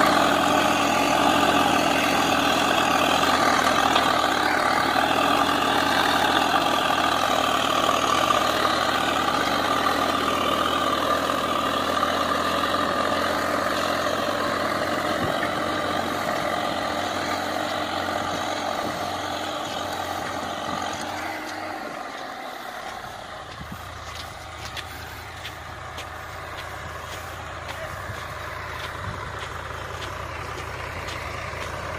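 Swaraj 855 tractor's three-cylinder diesel engine running steadily under load as it pulls a cultivator and disc harrow through ploughed soil. The sound fades as the tractor moves away and drops off noticeably about three-quarters of the way through.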